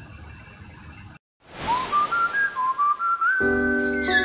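Closing theme music begins after a moment of faint room tone and a brief dropout. A lone high melody line rises in small steps over a soft hiss, and sustained keyboard chords join near the end.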